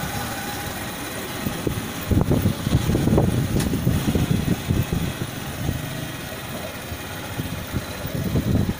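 Motorcycle engine running while riding along a concrete road, with a steady drone that gets louder and rougher for a few seconds from about two seconds in.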